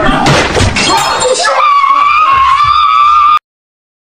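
A crash of something breaking, lasting about a second and a half. It is followed by a high, steady, slightly wavering squealing tone, like a held voice, that cuts off suddenly into silence shortly before the end.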